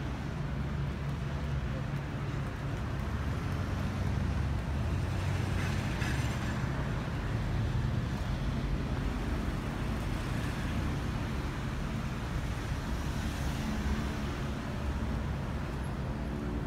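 Steady low engine rumble with traffic noise outdoors, unchanging throughout.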